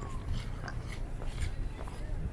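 Footsteps on a paved promenade, short scuffs about two a second, over a steady low rumble.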